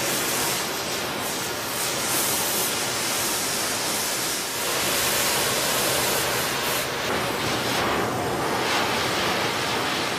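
Oxyacetylene torch flame hissing steadily as it heats a 4130 chrome-moly steel tube. The tube is being heated to normalise a bushing that overheating during drilling had hardened.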